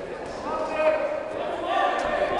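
People shouting in an echoing gym hall during a boxing bout, with a few sharp thuds from the fighters in the ring.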